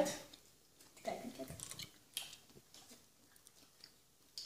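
Children chewing jelly beans: faint, scattered small mouth clicks.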